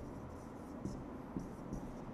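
Marker pen writing on a whiteboard: a series of short, faint squeaky strokes with light taps as the tip meets the board.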